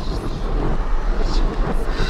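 Road and engine noise of a moving taxi heard inside the cabin through the in-car camera's microphone: a steady low rumble with hiss above it.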